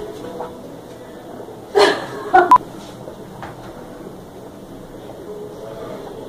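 Quiet kitchen room tone broken by two short vocal sounds about two seconds in, half a second apart, the second with a sharp click.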